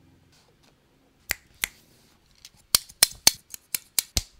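Plastic hair clamp snapping shut, a series of sharp clicks: two about a second in, then a quicker run at roughly three to four a second toward the end.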